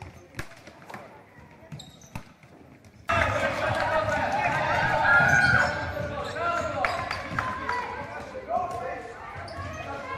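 Indoor basketball game sound: the ball bouncing on the court amid players' and spectators' voices and calls, echoing in the hall. It starts abruptly about three seconds in, after a faint stretch with a few clicks.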